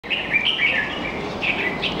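Red-whiskered bulbul singing: a quick warbling phrase near the start, then a shorter one about a second and a half in.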